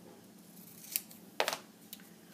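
Scissors cutting paper: a few short, sharp snips in the second half.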